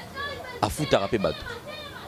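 Speech: talking, with other voices mixed in behind it.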